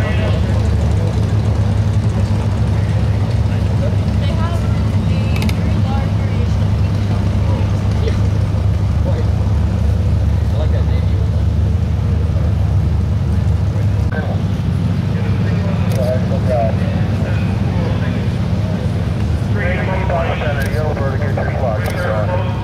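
Republic Seabee amphibian's single pusher piston engine running steadily at low power as it taxis on the water, a loud even low rumble. People's voices come in faintly at times, most near the end.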